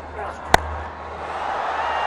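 Cricket bat striking the ball once, a single sharp crack about half a second in, the ball coming off the top half of the bat in a skied mis-hit. Crowd noise swells afterward.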